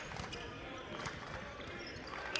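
Basketball dribbled on a hardwood court: a series of faint, irregular bounces, with indistinct voices in the background.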